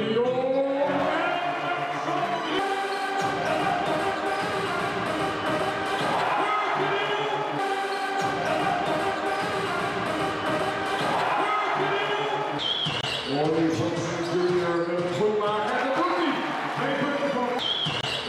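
Basketball being dribbled on a hardwood court, with a couple of short high sneaker squeaks in the second half, over music playing through the hall.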